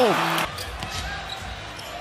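A basketball dribbled on a hardwood court, a few faint bounces over a low, steady arena crowd murmur.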